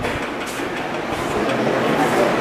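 Steady background noise, an even hiss-like wash with no distinct events or pitched sound.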